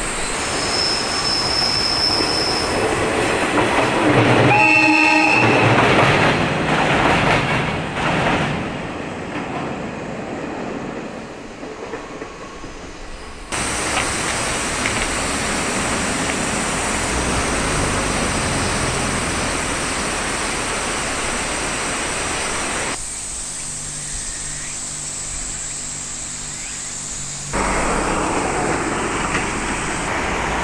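A railcar's horn sounds briefly about four seconds in, amid the loud rumble of the train passing on a railway bridge. After that comes a steady rushing noise.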